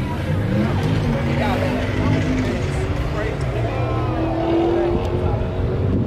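A car engine running steadily, its pitch drifting slightly up and down, with voices in the background.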